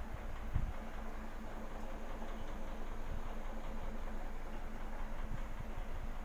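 Aquarium air pump and bubbling sponge filter running: a steady hum with a hiss of rising air bubbles. A low bump sounds about half a second in.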